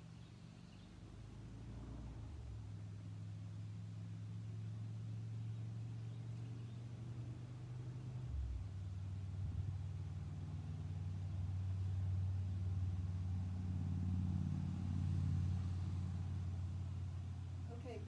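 Low engine hum that grows louder over several seconds, with a shift in its pitch about halfway through.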